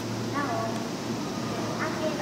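Voices of people talking, with short rising and falling exclamations, over a steady low hum and background noise.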